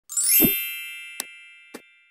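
Logo intro sound effect: a quick rising sweep into a bright ringing chime with a low thump, fading slowly. Two short clicks come about a second and a second and a half in, from the subscribe-button animation.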